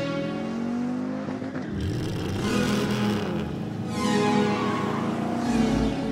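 Car engine revving and sweeping past several times, mixed over intro music.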